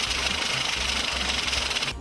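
Banknote counting machine running a stack of bills through at speed: a rapid, even paper flutter over a whirring motor, starting and stopping abruptly.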